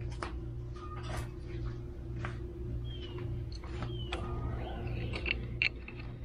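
Scattered light metal clicks and taps of an adjustable wrench being handled and fitted onto a bolt clamped in a bench vise. Under them runs a steady low mechanical hum that pulses evenly.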